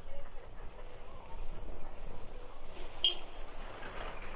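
Street ambience: indistinct distant voices over a faint steady low hum, with one short high-pitched sound about three seconds in.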